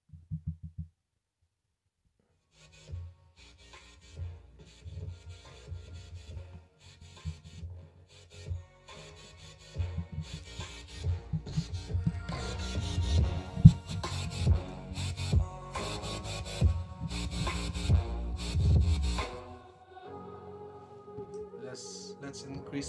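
A pair of Bang & Olufsen Beoplay P6 portable Bluetooth speakers playing music in stereo pairing mode, heard through the room. The music comes in softly a couple of seconds in and grows louder with a strong bass beat about halfway through. It drops much quieter shortly before the end.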